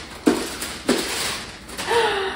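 Plastic mailer bag crinkling and rustling as a boxed item is pulled out of it, with two sharper crackles, about a quarter second in and about a second in.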